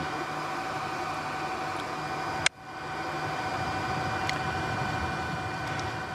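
Steady hiss and hum with a few faint steady tones, broken by a single sharp click about two and a half seconds in, after which the sound drops out briefly and fades back.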